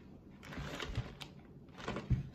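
Faint handling noise: a few light clicks and knocks as a plastic pistol-grip RC transmitter is turned over in the hands.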